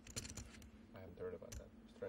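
Poker chips clicking as they are handled at the table: a quick, irregular run of light clicks.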